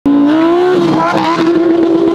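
A Corvette Z06 and a Lamborghini Huracán EVO accelerating hard side by side in a drag race, their engines revving high. The engine note climbs steadily in pitch, with a short break about three quarters of a second in.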